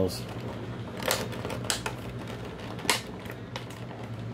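Clear plastic clamshell blister trays being handled, crinkling and clicking, with a few sharp snaps. The loudest come about a second in and again near three seconds in.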